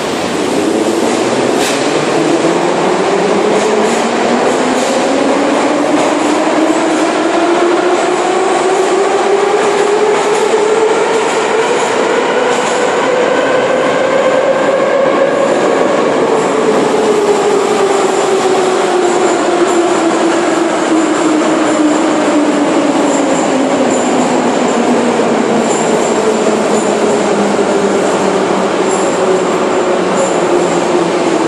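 Moscow Metro train's electric traction motors whining in a chord of tones. The chord climbs steadily for about fifteen seconds as the train gathers speed, then slides back down over the second half as it slows. Underneath runs a continuous rumble and hiss of wheels on rail, with a few sharp clicks near the start.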